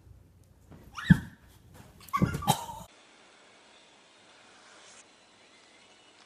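Animal cries: one short loud call about a second in, then two more close together a second later, after which the sound cuts off.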